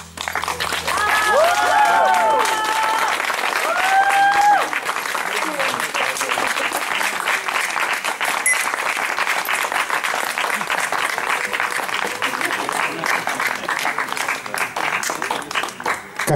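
Audience applauding after a song, the clapping starting suddenly and running on steadily. A few voices call out over it during the first four or five seconds.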